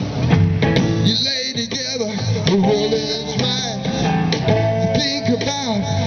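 Live blues band playing: electric guitars, electric bass and a drum kit, with a lead line that bends and wavers in pitch.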